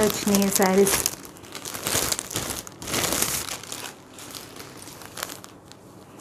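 Clear plastic sheeting crinkling as it is handled, busiest in the first few seconds and dying away after about four seconds.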